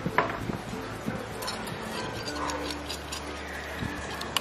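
Utensils beating mixtures in glass bowls, a run of light irregular clicks and scrapes. A wire balloon whisk is working a Milo mixture, and a fork is beating sugared egg whites.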